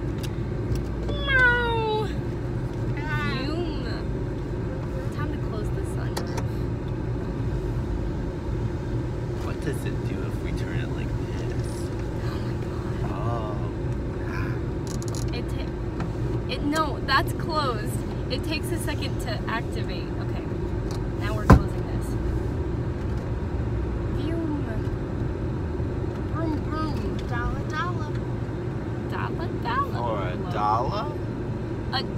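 Steady road and engine hum inside a moving car's cabin, with short high squeals and gliding vocal sounds from the passengers now and then and a single sharp click about two-thirds of the way through.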